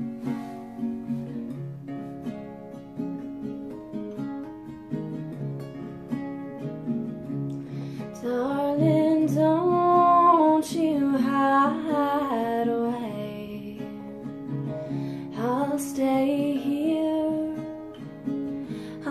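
Solo acoustic guitar playing a steady picked accompaniment, joined about eight seconds in by a woman's singing voice in two short phrases.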